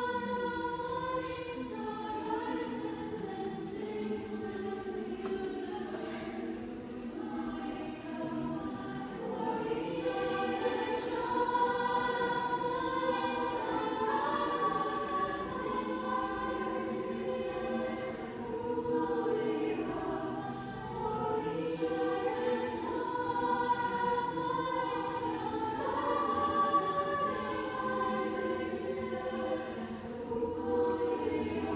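A mixed high school choir singing in a church, many voices together holding long notes that move from chord to chord.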